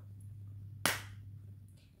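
A single sharp smack a little under a second in, likely hands or cards struck together, over a faint low steady hum.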